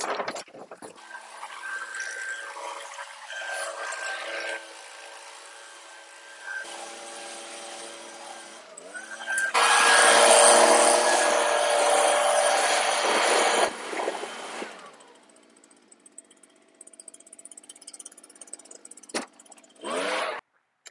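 Gas-powered handheld leaf blower idling, then revved to full throttle about nine seconds in for roughly four seconds of loud air blast at the grass clippings caked under a mower deck, before dropping back to idle and shutting off around fifteen seconds in. It is mostly quiet after that, apart from a few light knocks.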